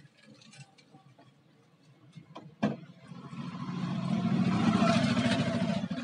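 A sharp click, then a vehicle engine that swells up over a second or two, holds, and fades away near the end, heard from inside a car.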